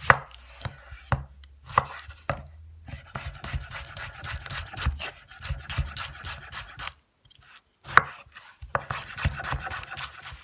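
Knife slicing a tomato on a wooden chopping board, each cut ending in a tap on the board. The strokes come quick and close together, stop briefly about seven seconds in, then go on with one sharp, loudest knock.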